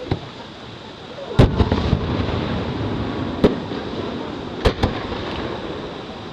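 Aerial firework shells bursting: a series of sharp bangs, the loudest about a second and a half in with two smaller ones right after it, then more near three and a half and five seconds in, each trailing off in a low rumbling echo.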